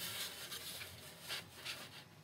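Faint rubbing and scraping of a balsa model-plane wing being slid and rocked into its tight fuselage slot, the joint wet with CA glue, with a couple of brief sharper scrapes past the middle.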